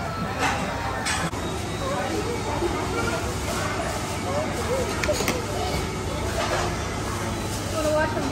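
Chatter of voices around a restaurant table over a steady low hum, with a few short metallic clinks from a ladle in a steel hot-pot.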